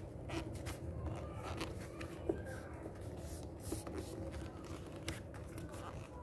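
Faint rustling and scraping of a calendar sheet being folded over a steel ruler, with scattered light clicks and taps; the sharpest tap comes about two seconds in.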